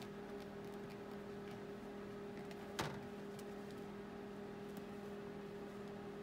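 A steady low hum, with one sharp click about halfway through.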